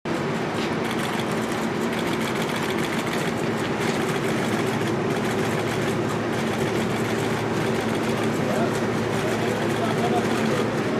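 Steady outdoor background: indistinct voices over a continuous engine hum, with faint scattered clicks.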